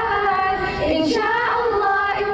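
A group of schoolgirls singing together into microphones, holding sustained notes that step to new pitches as the melody moves.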